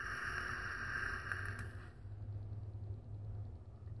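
Air hissing through an Innokin iSub Apex vape tank on a Cool Fire 4 mod during a long draw, with a whistle-like tone, cutting off suddenly about two seconds in. A low steady hum remains after it.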